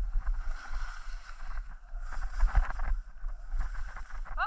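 Skis scraping through chopped-up snow on a downhill run, with wind rumbling on the microphone. The scraping swells and fades in waves, loudest a little past halfway.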